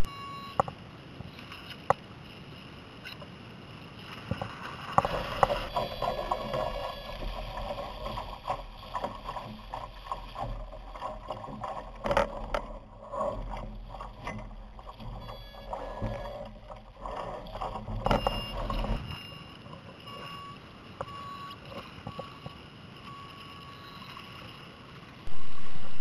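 Water splashing and wind buffeting the head-mounted camera aboard a Laser sailing dinghy, louder with a low rumble through the middle stretch, with scattered knocks and clicks of gear. Near the end comes a run of short high beeps about once a second, the countdown to the start.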